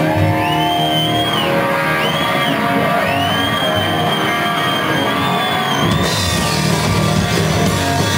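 Live rock band playing, with electric guitar holding and bending a high lead note over bass and drums. About six seconds in, the cymbals and low end come in harder.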